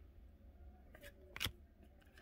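Trading cards being handled: a few faint ticks and one sharp click of card stock about one and a half seconds in, as one card is set down and the next picked up.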